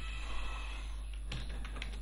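Computer keyboard being typed on, a few key clicks in the second half, over a steady low hum.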